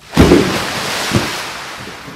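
A splash of water into a pool: a sudden loud rush of noise that fades away over about two seconds.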